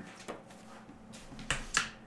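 Paper being handled: a faint click early, then two short, sharp crackles about a quarter second apart near the end.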